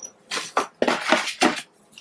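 Clear plastic packaging bag crinkling and rustling in about four short bursts as it is handled.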